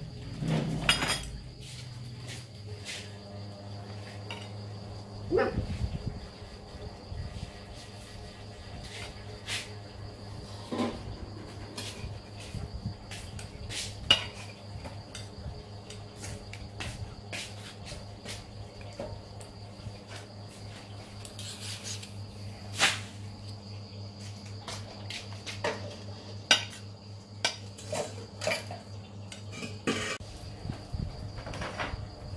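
A metal knife and tongs clinking and scraping against a ceramic plate as cooked eggplant is cut up, with scattered sharp clicks at irregular intervals. A steady low hum runs underneath.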